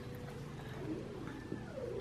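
A baby's soft, brief vocal sounds, faint against room tone: a couple of short gliding coos.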